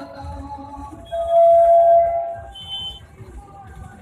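Music playing through loudspeakers. A loud, steady held tone comes in about a second in and lasts about a second and a half, followed by a brief higher tone.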